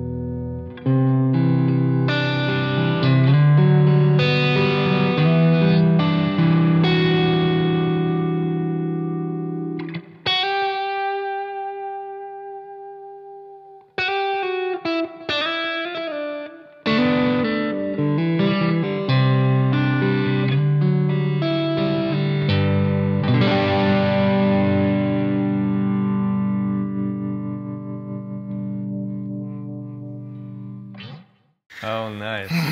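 Electric guitar, a Fender American Professional II Stratocaster, played through an amplifier: strummed chords, then a single long-held note about ten seconds in, a few short choppy notes, and more chords that ring and fade toward the end.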